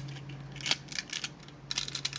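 Hard plastic parts of a Generation 1 Transformers Divebomb toy clicking and clacking as they are turned and snapped into place by hand: a few sharp clicks about a third of the way in and a quick cluster near the end.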